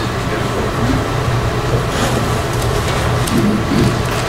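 Steady low hum and hiss of room background noise, with faint voices briefly near the end.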